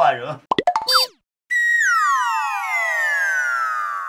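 Comedic cartoon sound effects: a quick run of zipping boing sweeps, then after a brief silence a long falling glide of many tones sliding down together, a deflated 'wah-wah' style drop.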